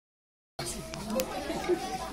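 Silent for about half a second, then several people talking at once in overlapping chatter.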